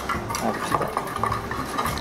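Wire whisk beating egg in a small pot: quick, rhythmic clicks and scrapes of the whisk against the pot's sides, about six strokes a second.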